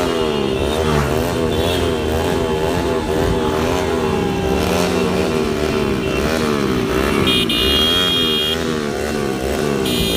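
Motorcycles running along a road, their engine note wavering up and down in quick, regular waves over a steady hum.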